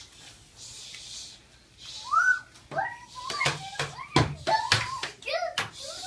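Young children's high voices with a quick run of sharp clacks in the second half, as plastic toy swords strike during a play sword fight.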